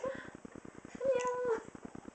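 A baby's short vocal squeal: one held, even note lasting about half a second, about a second in.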